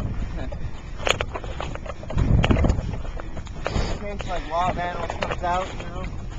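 Footsteps through wet grass and patchy snow, with irregular crunches and knocks from walking with a handheld microphone, and a low rumble of wind on the microphone about two seconds in. A voice speaks briefly near the end.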